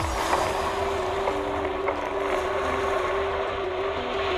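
Subaru BRZ's flat-four engine running at a fairly steady pitch, a droning note that steps slightly up and down, with a haze of wind and road noise on the outside-mounted camera as the car slides on loose wet gravel.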